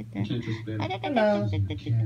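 A very young kitten giving short squeaky mews while being handled, over voices talking in the background.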